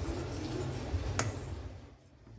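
Wire whisk stirring thick custard in a stainless steel pot, a soft even scraping with one sharp click of the whisk against the pot about a second in.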